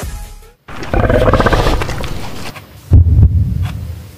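A growling roar lasting nearly two seconds, starting under a second in, followed by heavy bass thuds of electronic music.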